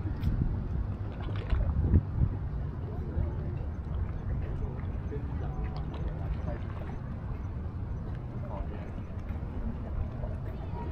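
Outdoor waterfront ambience: a steady low rumble of wind on the microphone, with indistinct voices of passers-by and a few louder bumps about two seconds in.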